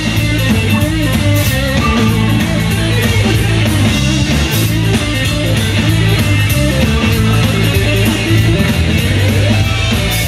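Live blues band playing loud and steady: electric guitar over a drum kit, with no vocal line transcribed.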